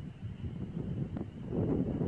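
Wind buffeting a phone's microphone: a low, uneven rumble.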